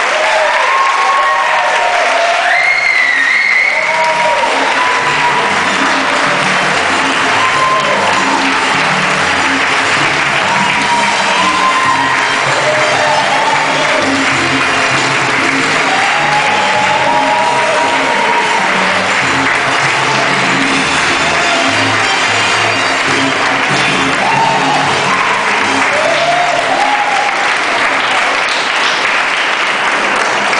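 Crowd applauding and cheering, with whoops, over salsa music.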